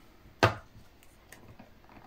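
Tarot card deck knocked once, sharply, on the tabletop about half a second in, followed by a few faint clicks of cards being handled.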